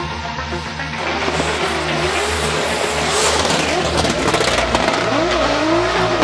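Drift car engine revving up and down with tyre squeal, coming in about a second in, over background music.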